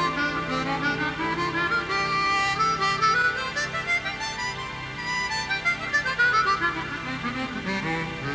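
Harmonica solo played in quick runs of notes, climbing in the first few seconds and falling again later, over a low, steady backing accompaniment.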